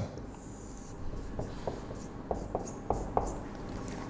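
Marker drawing on a whiteboard: one longer stroke near the start, then a run of short, quick strokes and taps as a row of small arrows is drawn.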